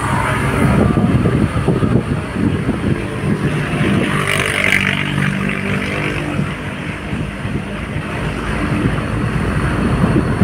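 Engine and road noise of a moving vehicle heard from inside it at an open window: a steady low rumble with a held engine tone through the middle, and a brief higher hiss about four seconds in.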